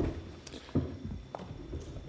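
A few dull knocks and shuffles of people sitting down in chairs and moving them, with some footsteps, spread irregularly through the two seconds.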